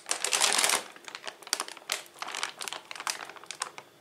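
Plastic bag of thawed cauliflower florets crinkling as it is handled and laid on a kitchen scale: a loud rustle in the first second, then scattered crackles of the plastic as it settles.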